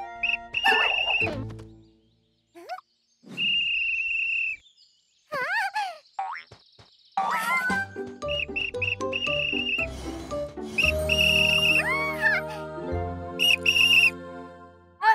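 Cartoon soundtrack of music and comic sound effects. It starts with a held high whistle-like tone and wobbling, sliding boing-type tones broken by short silences. From about halfway in, a fuller, bouncy tune with a bass line takes over.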